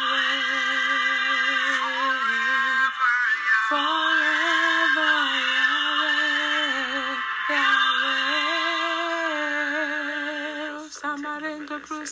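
A single voice singing a worship song in long, held notes with a wavering vibrato, in three phrases of a few seconds each, then breaking into shorter, quicker notes near the end.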